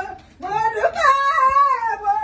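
A person's drawn-out, wailing voice that rises and falls in pitch, starting after a short pause near the beginning.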